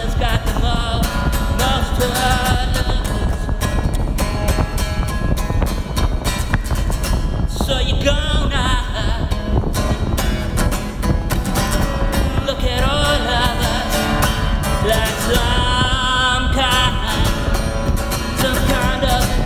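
Acoustic guitar strummed steadily, with a man singing over it in several phrases.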